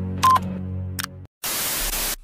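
A short blip and click of a subscribe-button animation over a low steady music bed, then a brief dropout and a burst of television static hiss in the last half second.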